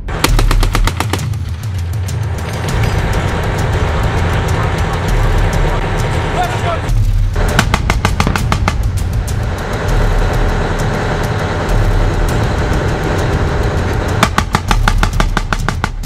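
Three bursts of rapid automatic gunfire, each lasting a second or two: one at the start, one about seven seconds in and one near the end, over background music with a steady beat.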